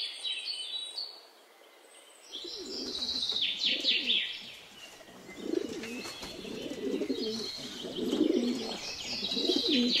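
Caged domestic pigeons cooing, the low coos setting in about two seconds in and going on in overlapping runs. High-pitched chirping sounds over them at the start and again near the third and fourth seconds.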